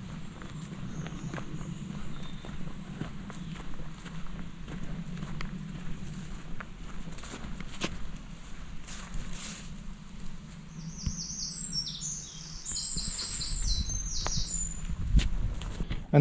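Footsteps along a grassy dirt path, with rustling and a low steady hum underneath. A bird sings a run of short, high, repeated notes in the last few seconds.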